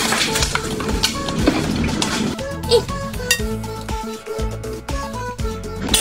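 Background music, over a metal spoon scraping and scooping into a candy-covered ice cream cake, with crackly scraping and clicks of candies loudest in the first half.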